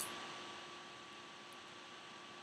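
Faint steady hiss of room tone with a thin constant hum, opened by a single sharp click at the very start.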